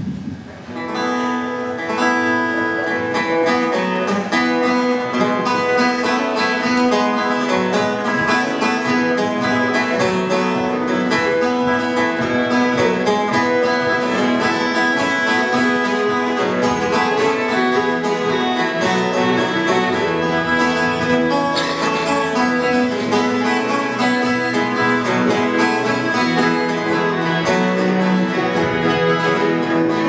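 Instrumental playing by an acoustic folk ensemble, starting about a second in: acoustic guitar and plucked bouzouki-type string instruments, with fiddle and cello bowing along. No singing.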